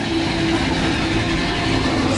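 Big Thunder Mountain Railroad mine-train roller coaster running along its track: a steady, even rolling noise.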